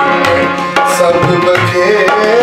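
Tabla played with sharp, frequent strokes, accompanying a harmonium's steady held chords and a man singing a gliding melody.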